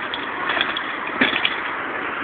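A bicycle and rider crashing down steps: a few short knocks and clatters, about half a second in and again just after a second, over a steady hiss.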